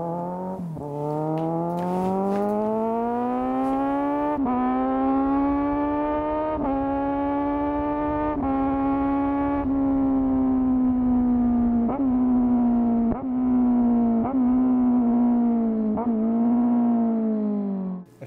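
Kawasaki Z1000 inline-four motorcycle engine accelerating hard through the gears. Its pitch climbs and drops back at each upshift, roughly every two seconds. Then it eases off and falls in pitch through a series of short throttle blips on the downshifts.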